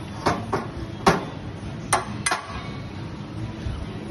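Five sharp metal-on-metal clinks, spaced irregularly over about two seconds, from glassblowing steel (pipe, punty or hand tools) knocking on the bench rails. They sit over a steady low background roar.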